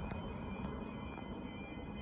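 A car driving past along the road below toward the level crossing, a steady low engine and tyre rumble.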